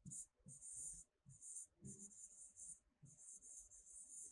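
Faint scratching of a pen writing on a board: a run of short strokes in quick groups as words are written out by hand.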